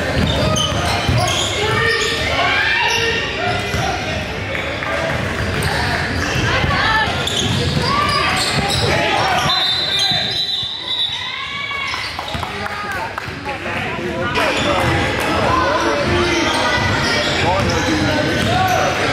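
Live game sound in a gym: a basketball dribbled on a hardwood court, with sneakers squeaking and players' and spectators' voices echoing around the hall.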